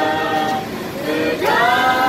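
A group of men and women singing a Malaysian patriotic song together, unaccompanied by any clear instrument, ending on a long held note.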